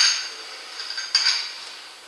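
A steel nut on a short tube clinking and scraping against metal as it is screwed by hand onto the threaded end of a crankshaft half: a sharp clink right at the start and another few clinks about a second in.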